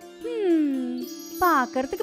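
A cartoon character's voice: a long falling exclamation, then quick expressive speech from about halfway in, over light children's background music with a tinkling jingle.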